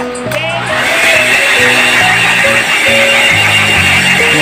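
Handheld hair blow dryer switched on, building up over the first second and then running steadily with a high whine, over background music.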